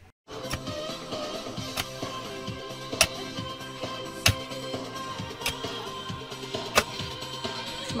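Background music with a pickaxe striking into stony soil about every second and a quarter, five sharp blows in all.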